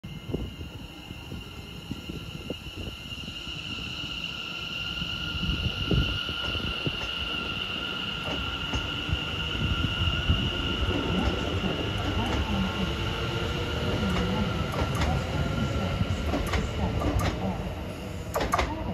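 Greater Anglia Class 720 electric multiple unit running past on the far track. There is a steady, high-pitched whine in two pitches over the rumble and clicking of its wheels on the rails. It grows louder over the first few seconds and fades slightly near the end.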